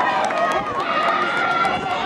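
People talking: voices close to the microphone with others in the crowd behind, and no other sound standing out.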